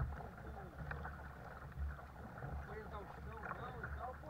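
Kayak paddling: water splashing, dripping and gurgling from the double-bladed paddle strokes and along the plastic hull, with a steady low rumble underneath.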